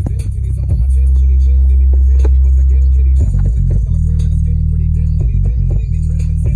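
JBL Boombox 2 portable speaker playing the bass-only version of a hip hop track at maximum volume on AC power: deep, sustained bass notes, one held for about two seconds near the start, then shorter ones.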